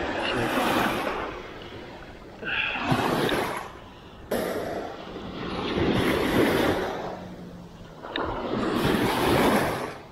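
Small waves breaking and washing up over sand at the water's edge, rising and falling in four surges of rushing noise about two to three seconds apart.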